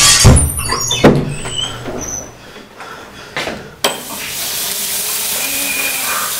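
A restroom door bangs open, followed by short high squeaks and a knock. From about four seconds in, a sink tap runs with a steady hiss.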